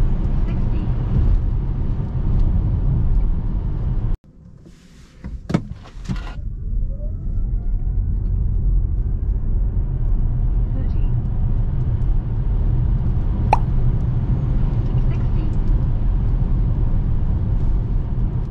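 Cabin road and tyre noise from a Hyundai Ioniq 5 AWD electric car during an acceleration run: a loud, steady low rumble. It cuts off abruptly about four seconds in. A few sharp clicks follow, then a faint rising electric-motor whine as the car pulls away again, and the road rumble builds back up.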